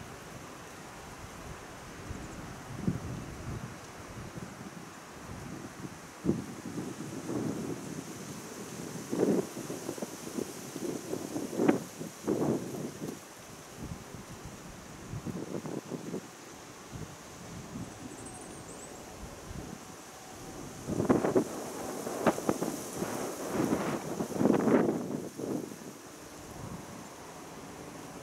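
Wind buffeting the camera microphone in irregular gusts, with the strongest run of gusts about three quarters of the way through, over a steady faint hiss.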